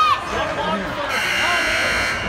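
Ice rink buzzer sounding one steady electronic tone for about a second, starting about halfway through. It comes just as the game clock reaches an even 22:00, which fits a timed shift-change buzzer. A short shout comes right at the start.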